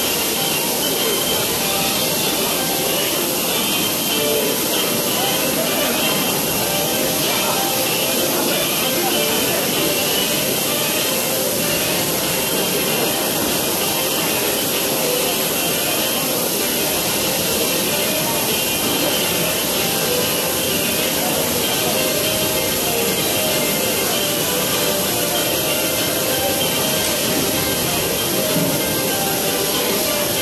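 Laser marking machine engraving a steel part: a steady hiss with a few faint steady tones, unbroken throughout.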